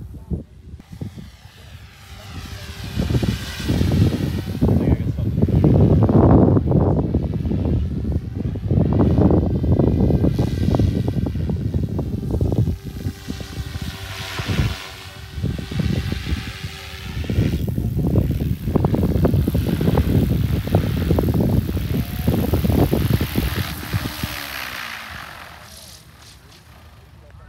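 Goosky RS4 electric RC helicopter flying: a steady rotor and motor whine under a gusty rush that swells and fades as it passes overhead. Near the end it descends and the sound drops, its pitch falling.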